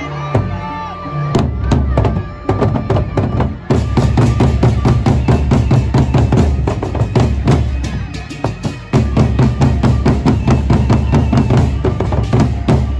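Gendang beleq ensemble playing: large Sasak double-headed barrel drums beaten with a stick and the hand in fast, dense strokes. The drumming starts about a second in, eases briefly about two-thirds of the way through, then picks up again.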